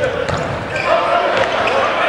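Volleyball rally in a large reverberant hall: the ball is struck sharply a few times, among the echoing voices of players and spectators.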